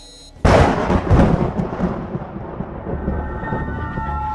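A short electronic beep, then about half a second in a sudden loud boom that rumbles and dies away over the next two seconds.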